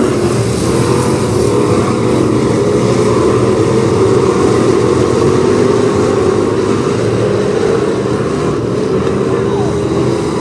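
A pack of dirt-track hobby stock race cars lapping the oval, their engines running hard in a loud, steady drone with several overlapping pitches that waver as the cars pass.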